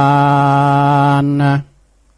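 A male monk's voice chanting in the melodic style of Northern Thai verse recitation, holding one long, steady note at the end of a line. The note stops about one and a half seconds in, leaving faint hiss.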